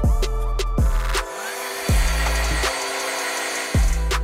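Background hip-hop beat, with a heat gun blowing as a steady hiss from about a second in until near the end.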